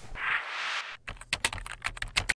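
A whooshing swell of noise for most of the first second, then quick computer-keyboard typing, about eight keystrokes a second: a typing sound effect for text being entered into an animated search bar.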